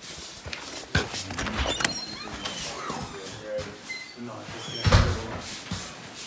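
A door being opened and shut as someone walks into a shop, with scattered knocks and a heavy thump about five seconds in. Faint voices can be heard in the background.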